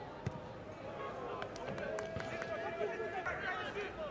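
A football is struck once with a sharp thud just after the start, then men shout across the pitch, with several short sharp knocks among the voices.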